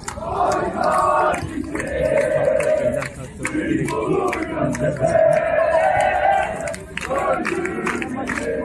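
A large crowd of marchers chanting in unison, in repeated shouted phrases of a second or two each.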